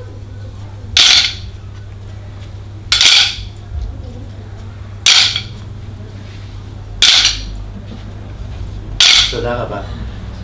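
A group striking wooden sticks in unison: five sharp clacks, one every two seconds, each a little spread out where the sticks don't land exactly together.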